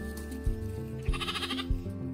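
Background music with a steady, even beat, and a lamb bleating once, briefly, about a second in.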